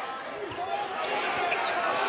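A basketball being dribbled on a hardwood court, a few bounces, with voices in the background.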